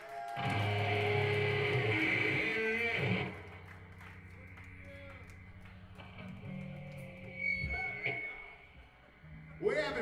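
Electric guitar through a loud amp: a chord rings out for about three seconds, then drops to quieter stray guitar and bass notes between songs.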